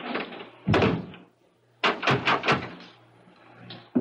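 Radio-drama sound effect of a wooden door shutting with a solid thud, then a key turning in its lock in a quick run of metallic clicks about two seconds in.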